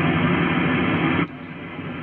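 Icom IC-7300 HF receiver hissing with heavy band noise on the 17-metre antenna. About a second in, the antenna is switched to the 20-metre antenna and the hiss drops suddenly to a much quieter level: a huge noise difference.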